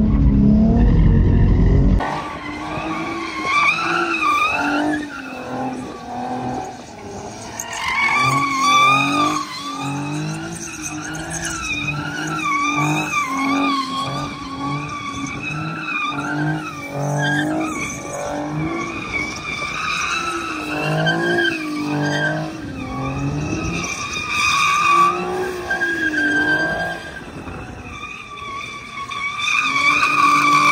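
Nissan 370Z's 3.7-litre V6 revving up and down hard while the car drifts, with tyres skidding and squealing as it slides. The first two seconds are the engine muffled inside the cabin, then it is heard from trackside.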